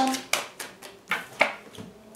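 Tarot cards being handled and one drawn from the deck, with three sharp card clicks, the last two close together.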